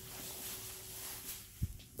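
Quiet room noise with a faint steady hum, and one soft low thump about one and a half seconds in.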